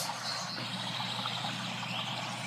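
Steady rush of water from a waterfall fountain pouring into its pool, with a faint low hum underneath.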